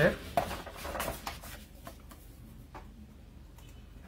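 A stiff paper pattern sheet being picked up and turned over on a worktable: rustling with light taps and clicks, mostly in the first couple of seconds.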